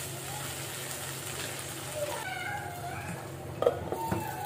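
Spatula stirring chickpea curry in a non-stick pan with a faint frying sizzle, then a sharp click about three and a half seconds in as a glass lid goes onto the pan. A cat meows in the background in the second half.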